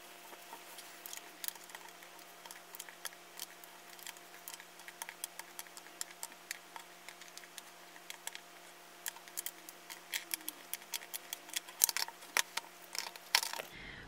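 Small metal eyeshadow pans clicking as they are picked up and set down on a wooden table and into a magnetic palette: light, irregular clicks that come faster and louder from about two-thirds of the way in.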